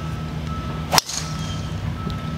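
Golf driver striking a ball off the tee: one sharp, loud crack about a second in. A steady low hum runs underneath.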